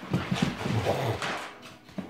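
Puppies play-wrestling on a wooden floor: a burst of scuffling and low play growls lasting about a second, then dying down, with a sharp knock at the very end.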